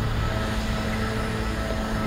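Steady mechanical hum of a running engine with street noise. It holds one even pitch with no rises or breaks.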